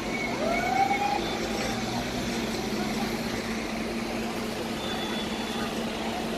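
Road traffic: a vehicle engine runs steadily as cars go around the roundabout, with one short tone rising in pitch about half a second in.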